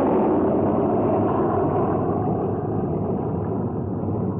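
Four turboprop engines of a low-flying Lockheed C-130 Hercules passing overhead: a loud, steady rushing drone that slowly eases off.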